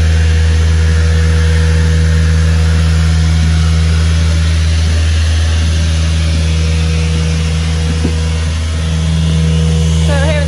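Milking-parlour pump machinery running with a loud, steady low hum that does not change.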